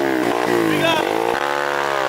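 Single-cylinder 150cc pitbike engine revving up and down as the bike pulls away through loose sand.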